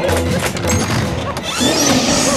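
Tense horror background music over rapid rattling and knocking of a door bolt and door being frantically worked. A rising whooshing swell comes in near the end.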